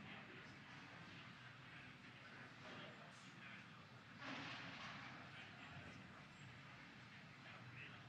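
Near silence: the faint hiss of a broadcast audio feed, with a brief, slightly louder rush of noise about four seconds in.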